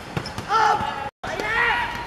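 Football players shouting on the pitch: two loud calls, about half a second and a second and a half in, with the dull knock of a football being kicked before the first. The sound cuts out completely for a moment between the two calls.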